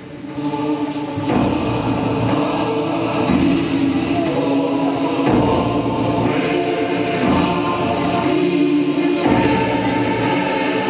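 Choir singing slow, long-held chords that change every second or two, swelling in over the first second or so.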